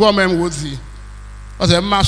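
Steady electrical mains hum, heard on its own in a gap of nearly a second between stretches of a man speaking into a microphone.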